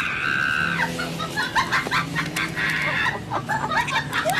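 Chicken clucking and squawking: a long squawk at the start, a run of short clucks, then another squawk about three seconds in.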